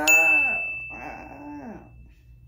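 A woman's voice sings two drawn-out notes, each rising then falling in pitch, to build suspense. A single high bell-like ding strikes at the start of the first note and rings on steadily for about two seconds.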